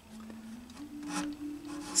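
Fine-toothed refret saw rasping in the neck-heel joint of an acoustic guitar, cutting through lacquer and a buried plastic binding strip, with two stronger strokes just past the middle and near the end. A faint steady low hum runs underneath and steps up in pitch about a third of the way in.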